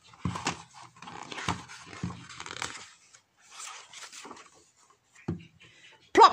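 Paper rustling and crinkling as a large picture-book page is turned over and handled, in a run of irregular crackles over the first few seconds and again briefly after; a single soft knock comes near the end.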